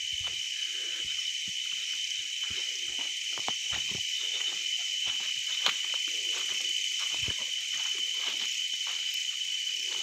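Night insects keeping up a steady high-pitched trill, with scattered soft rustles and snaps of leaves and twigs as someone moves through undergrowth.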